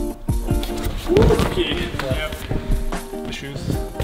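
Background music with a steady beat and held, plucked notes.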